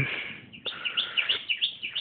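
A wild bird singing a quick run of short, high chirps, about four a second, starting about half a second in.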